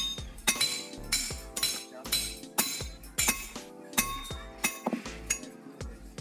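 Hand hammers striking hot iron on a railroad-rail anvil: a steady run of ringing metallic blows, about two a second, with music playing behind.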